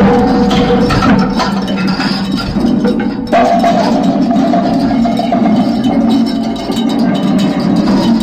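Live experimental noise music: a loud, dense wall of noise with a steady low drone under clattering metallic clicks and clanks. It dips for a moment about three seconds in, and a new held tone comes in after the dip.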